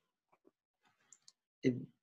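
Near silence on a video-call line, broken by a few faint short clicks about a second in. A voice starts speaking briefly just before the end.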